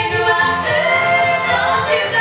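Three women singing held notes in harmony, backed by a live acoustic band of guitar, banjo, bass and cajon keeping a steady beat.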